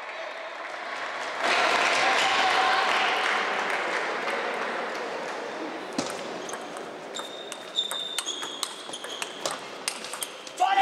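Celluloid table tennis ball in play: one sharp click about six seconds in, then from about seven seconds a quick series of clicks off bats and table as a rally gets going, over the murmur of a large hall.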